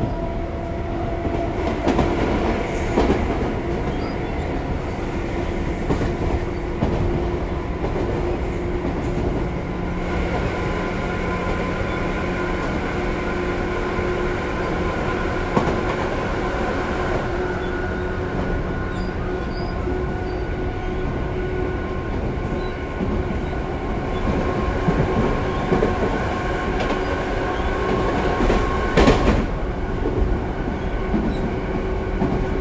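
Tobu 10030-series electric train with field-chopper control, heard from inside car MoHa 15663 while running: a heavy rumble with several steady motor and gear tones. A few sharper clacks from the wheels on the track come through, the loudest near the end.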